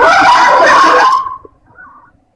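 Loud raised voices shouting, which cut off abruptly a little over a second in.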